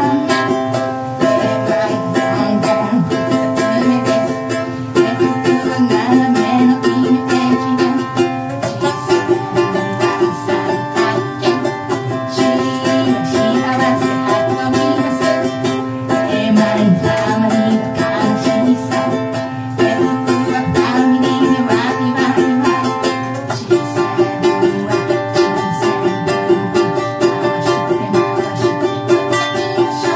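A woman singing to her own strummed ukulele, a steady chordal strum under a sung melody.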